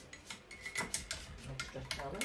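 A quick run of light clicks and clinks of small hard objects knocking together, most of them packed into the second half.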